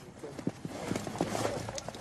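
Footsteps of several people walking over snow-covered ground: quick, irregular steps over a low hiss.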